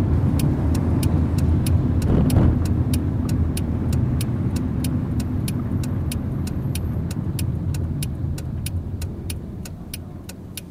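Inside a car on a wet road, tyre and engine noise runs under the steady ticking of the turn-signal relay, about three to four clicks a second, which starts just after the beginning. A louder swish from a passing vehicle comes about two seconds in, and the road noise eases off near the end as the car slows.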